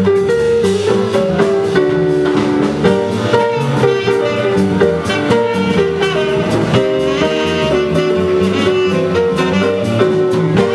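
Live jazz combo playing: a saxophone carries the melody over piano and walking upright double bass, with drums keeping time.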